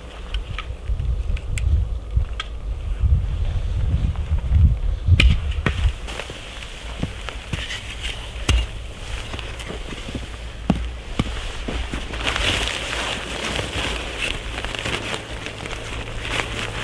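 Wood campfire crackling with scattered sharp pops, under a low rumble of wind on the microphone in the first six seconds or so.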